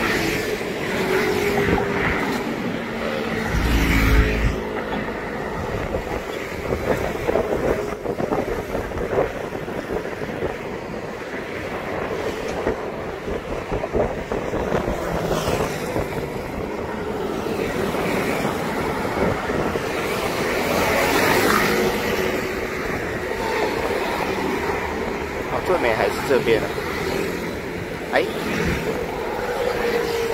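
Steady road traffic passing close by: motor scooters and cars, engine hum and tyre noise, with individual vehicles swelling louder as they go past, most notably about four seconds in and again near the end.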